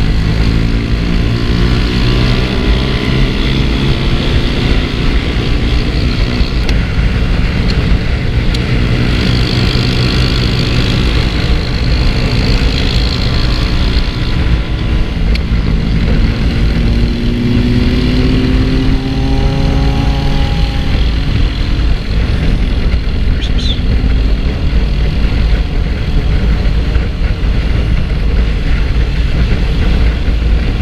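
2022 Zamco 250 motorcycle running under way, with heavy wind rumble on the microphone. The engine pitch rises and falls with changes in speed, climbing steadily a little past halfway through as the bike accelerates.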